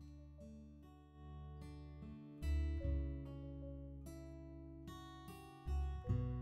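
Background music: an acoustic guitar picking slow single notes, with a deep low note swelling in about two and a half seconds in and again near the end.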